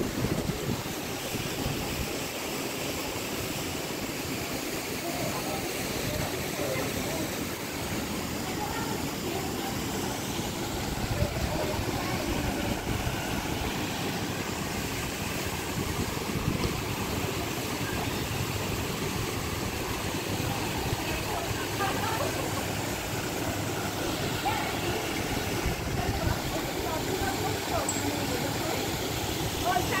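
Steady wind rumble on the microphone, with faint voices of people talking in the background.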